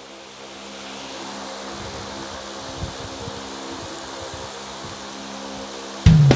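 Vehicle engine running steadily, heard from inside the moving vehicle, with tyre and road noise. An uneven low rumble joins from about two seconds in, as it travels over a rough road.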